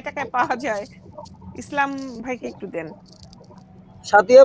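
Short stretches of voices heard over an online video call, over a steady low hum, fading quieter near the end.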